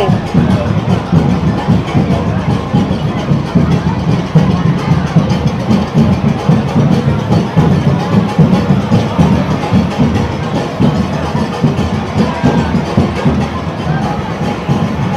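A Cuban street conga band playing: drums and hand percussion beating a dense, driving rhythm, loud and continuous, mixed with the voices of the surrounding crowd.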